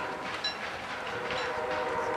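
A distant horn holding one steady, multi-pitched tone, growing stronger about one and a half seconds in.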